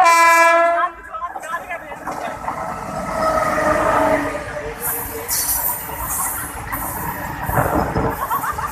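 Indian electric freight locomotive's air horn ending with a drop in pitch as it passes close by, followed by the locomotive's falling whine and then the rumble and rhythmic clatter of a long rake of open freight wagons passing at speed, with a heavier knock near the end.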